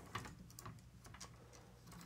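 Faint, scattered clicks of plastic Bionicle limb joints as the figure's arms are folded out and posed.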